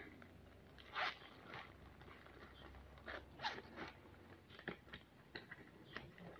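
Faint, scattered crinkles and rustles of a package being handled and opened: a few short, separate crackling noises spread over the seconds.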